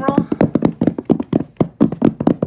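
A drum roll of rapid, even taps or knocks, about seven a second, kept up steadily.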